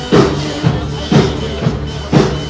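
Drum kit played along with the recorded pop song for a drum cover, with loud kick-and-snare accents about twice a second over the song's steady pitched backing.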